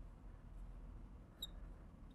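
A felt-tip marker squeaks once, briefly and high, on a glass lightboard about one and a half seconds in, over faint low room hum.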